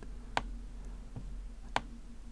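Two sharp clicks of a computer mouse, about a second and a half apart, over a faint steady low hum.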